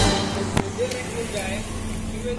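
Faint voices talking in the background over a low steady outdoor hum, with a single sharp click about half a second in.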